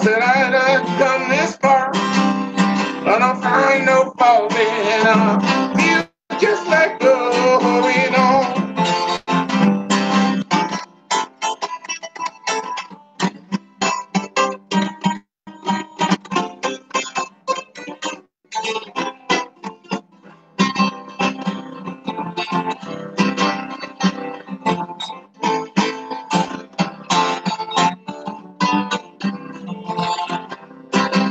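Solo acoustic guitar, fingerpicked in an instrumental passage. It is dense for about the first ten seconds, then thins to sparser single picked notes.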